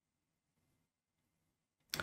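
Near silence, with one short sharp click just before the end.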